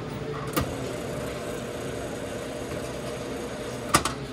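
Self-serve fountain soda dispenser humming steadily, with a sharp click about half a second in and a louder click near the end.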